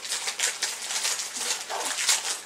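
Plastic Pocky wrapper crinkling in irregular bursts as it is handled and pulled at to open it.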